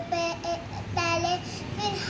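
A young girl's high voice reciting a prayer in a sing-song chant, holding level notes in short phrases with brief pauses.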